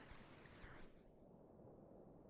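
Faint, muffled rush of whitewater rapids; the hiss fades out about a second in, leaving a low rumble.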